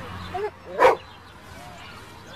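A dog barks once, sharply, a little under a second in.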